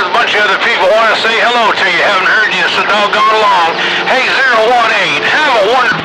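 A man talking over the air through a Ranger RCI-2995DX radio's speaker, in a narrow, tinny band with steady hiss behind the voice.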